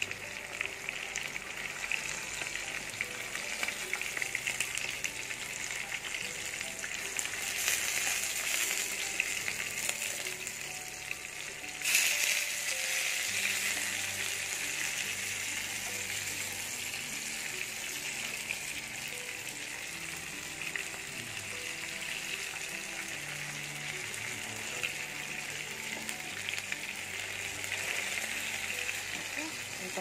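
Masala-coated fish steaks shallow-frying in hot oil in a pan: a steady sizzle that swells suddenly about twelve seconds in.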